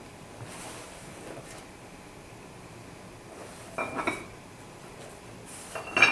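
Weight plates clinking against each other as they are loaded into a backpack: a faint rustle, then two sharp clinks with a brief ringing tone, one about four seconds in and a louder one near the end.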